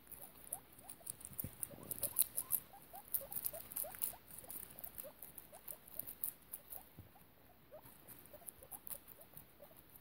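Guinea pigs chewing lettuce: rapid crisp crunching and nibbling clicks, busiest in the first few seconds, with faint short rising squeaks scattered throughout.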